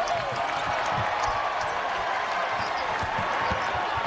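A basketball being dribbled on a hardwood court, a run of short low bounces, over the steady noise of an arena crowd.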